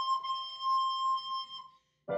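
Flute holding a long high note that wavers slightly in pitch, then fades and stops shortly before the end.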